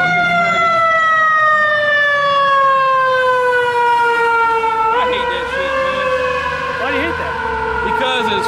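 Emergency vehicle siren wailing: one long tone slowly falling in pitch, jumping up a little about five seconds in and then falling again.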